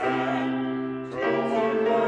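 A woman singing a hymn over other held notes, sustaining each note with vibrato and moving to the next about a second in.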